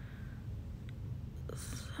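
Quiet indoor room tone with a steady low hum, a faint tick a little before one second, and a short breath just before speech resumes near the end.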